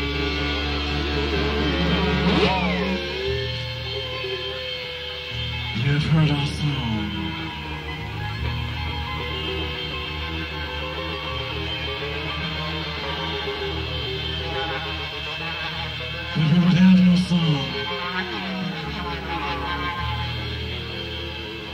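Live progressive rock band improvising: held bass notes that change every few seconds under wavering, sliding melodic tones, swelling louder about six and seventeen seconds in.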